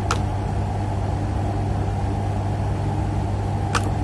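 A steady low mains-frequency hum, with two short clicks: one right at the start and one near the end.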